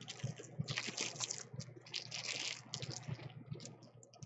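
Wiping and rustling of a paper towel against the hands, in two longer scrubbing stretches about a second in and past the two-second mark, with small clicks and taps between.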